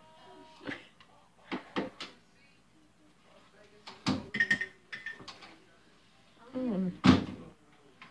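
Utensils clattering and knocking in an open wooden kitchen drawer as a baby rummages through it: a string of separate knocks and clinks, the loudest near the end. A brief voice sounds just before that last knock.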